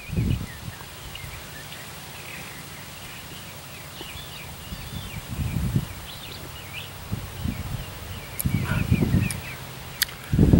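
Outdoor ambience with small birds chirping on and off in short calls, and a few short low rumbles.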